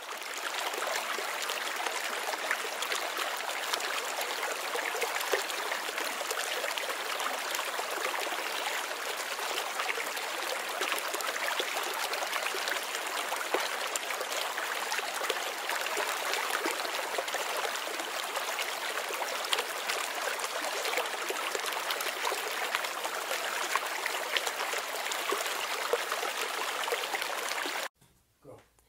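Flowing stream water, a steady rushing babble, that cuts off abruptly at the end.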